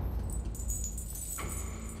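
Light metallic jingling with fine high ticks, over a steady low rumble.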